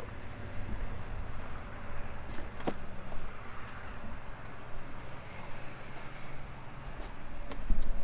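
Outdoor ambience of wind buffeting the microphone, with a faint steady low hum underneath and a few faint clicks and knocks.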